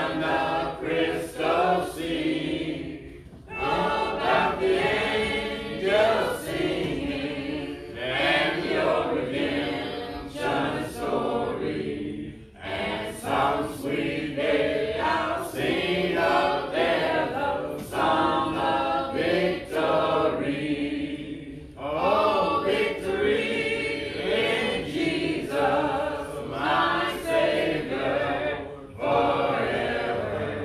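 A congregation singing a hymn a cappella: many voices in unison phrases of several seconds each, with brief pauses for breath between them.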